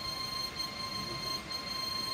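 Background music: several high, steady held tones that do not change, over a faint hiss.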